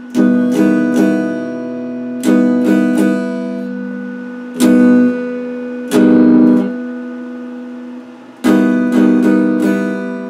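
Electric guitar strumming chords: clusters of two or three quick strums, then single chords left to ring and fade, with a fresh run of strums near the end. Part of a progression of open chord shapes that resolves to E minor.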